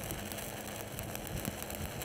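Stick-welding arc crackling steadily as a 3/16-inch electrode at 140 amps lays the cap pass of a downhill pipeline weld.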